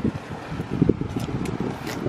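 Gusty wind buffeting the microphone: an uneven low rush that surges and drops.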